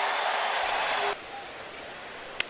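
Ballpark crowd cheering and applauding a home run, cut off abruptly a little over a second in, leaving quiet stadium ambience.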